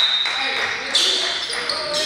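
Gym sound of a basketball game in progress: voices of players and spectators echoing in the hall, a basketball bouncing on the hardwood court, and short high squeaks about a second in.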